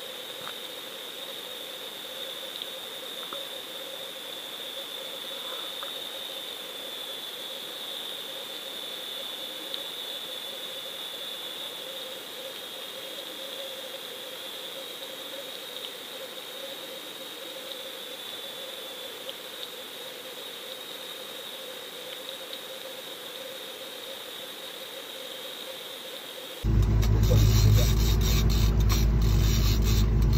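A steady high whine and a lower hum over faint hiss, as picked up by an underwater fishing camera hanging on the line. About 27 seconds in, a cut brings the much louder, steady running of a boat's outboard motor.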